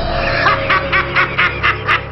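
Laughter in a run of short, even 'ha-ha' pulses, about four a second, starting about half a second in, over a low sustained music drone.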